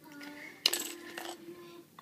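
A small metal pin badge clinks once against a hard surface, with a brief high metallic ring after the click.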